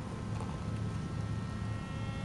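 Wind rumbling on a camera microphone, with faint steady high tones.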